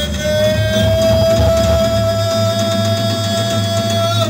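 A live rock band holds one long sustained note, with electric guitar, bass and drums, played loud. The main pitch stays steady with a slight upward creep, over a steady low rumble of bass and a wash of cymbals.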